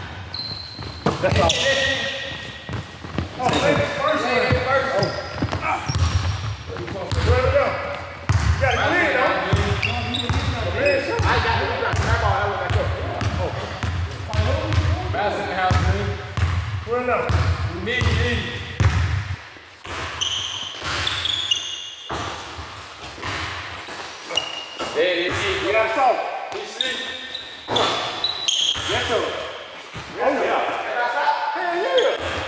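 A basketball dribbled on a court: repeated bounces through roughly the first two-thirds that stop about 19 seconds in, with players' voices calling out over the play.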